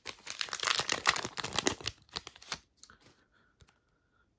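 Foil wrapper of an Upper Deck hockey card pack crinkling and tearing as it is pulled open by hand, a dense crackle that thins out and stops about two and a half seconds in.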